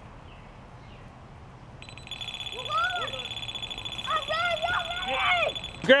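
Electronic carp bite alarm sounding a fast, unbroken run of beeps, a steady high-pitched tone that starts about two seconds in and cuts off just before the end: a fish taking line on one of the rods.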